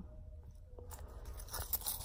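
Faint handling noise as a coated-canvas key holder is turned over in the hands, with a few small clicks in the second half.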